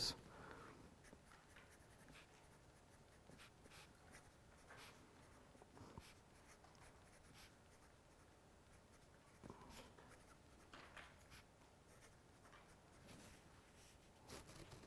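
Faint scratching of a pen writing an equation by hand, in short strokes that come and go.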